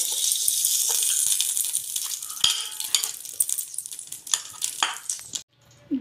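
Ghee sizzling as it melts in a hot aluminium pot, the hiss dying down over the first few seconds. A metal spoon clinks and scrapes against the pot several times.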